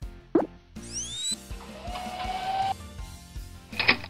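Cartoon sound effects over light background music: a quick plop about a third of a second in, rising swooping glides around one second, a held tone that creeps upward, and a sharp pop just before the end.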